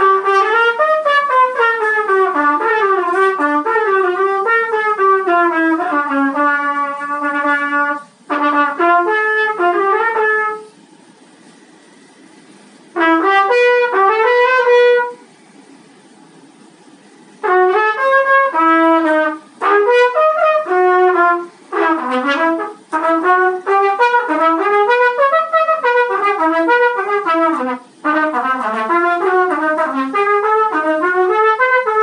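Solo trumpet playing fast runs of notes up and down. There are two rests of about two seconds near the middle and a few short breaths between phrases.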